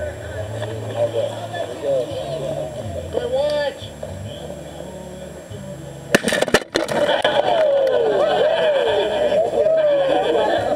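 A watermelon loaded with fireworks blows apart in a quick cluster of sharp bangs about six seconds in, followed by excited voices.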